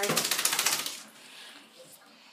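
Wet fur of a small dog in the bath rattling in a rapid burst of fine clicks for about a second, then dropping to faint background.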